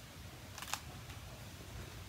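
A short rustle of a hardcover picture book being handled as it is lowered, about half a second in, over a faint low room hum.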